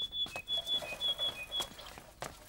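A small bird chirping a quick series of short high notes, alternating with a few slightly lower ones, with a few faint clicks underneath.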